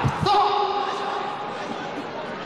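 Two quick thuds of blows landing as two kickboxers clinch against the ropes, then one long held shout over arena crowd noise.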